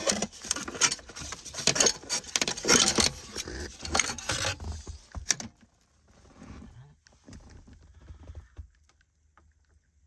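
Irregular clattering and rattling of metal and plastic as an airbag control module (occupant restraint controller) is worked loose and pulled up from its mount by gloved hands. This lasts about five seconds, then only a few faint handling sounds follow.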